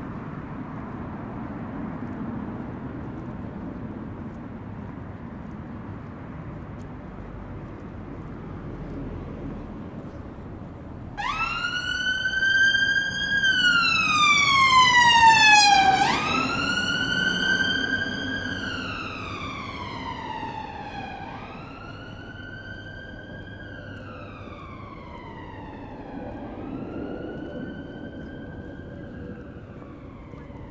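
Emergency vehicle siren on a wail cycle, each sweep rising quickly then falling slowly, about every five seconds. It starts suddenly about a third of the way in, is loudest around the middle, then fades as it moves away, over steady street traffic noise.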